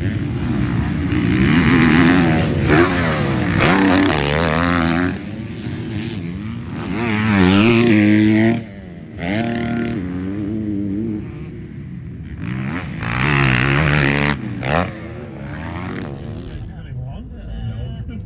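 Dirt bike engine revving up and down as the bike accelerates and shifts, its pitch rising and falling with each burst of throttle. It is loudest about two seconds in, again around seven to eight seconds, and again around thirteen to fourteen seconds.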